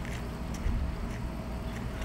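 Steady low outdoor rumble with a few faint ticks.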